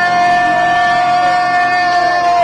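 A man's long, drawn-out shout held on one steady high pitch: the stretched-out end of an emcee's introduction of a speaker's name.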